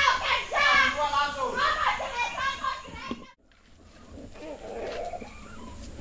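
Several children's voices talking and calling over one another, cut off suddenly about three seconds in, with only a faint, quieter background after.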